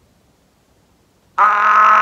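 A pause of near silence, then about a second and a half in a man lets out a loud, long drawn-out cry of "ah", held on one steady pitch.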